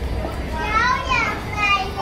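A child's high-pitched voice calling out, its pitch rising and falling, over a low rumble.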